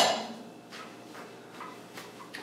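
Faint knocks and clinks of drinking glasses being gathered up, a few scattered taps over quiet room tone.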